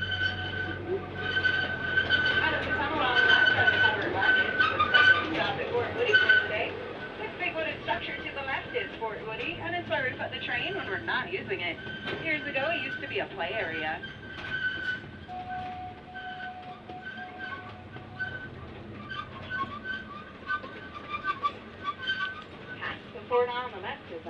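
Open-car zoo ride train running along its track, with a steady high-pitched whine. Riders' voices sound over it, loudest in the first several seconds.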